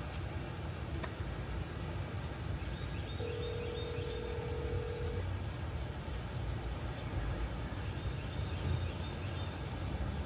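Telephone ringback tone heard through a phone's speaker: one steady two-second ring about three seconds in, part of a repeating ring-and-pause cadence while a call goes unanswered. A steady low outdoor rumble runs underneath.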